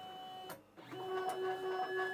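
Stepper motors of a DIY hotwire CNC foam cutter whining steadily as the horizontal axes run their homing calibration toward the limit switches. The whine stops briefly just over half a second in, then starts again with a different set of pitches.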